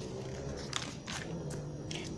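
A glossy magazine-paper catalogue page being turned by hand: a faint rustle of paper with a few short, soft handling sounds.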